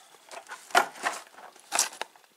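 Cardboard ammunition boxes handled on a wooden table, one put down and another picked up: a few short rustles and knocks, the loudest near the end.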